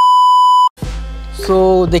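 A steady test-tone beep of the kind laid under TV colour bars, lasting about three-quarters of a second and cutting off abruptly. After a short gap, music comes in, with a voice over it from about halfway through.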